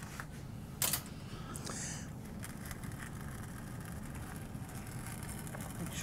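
Low steady room hum with a single brief click about a second in and faint scraping as a hand tool strikes off excess epoxy grout over taped moulds.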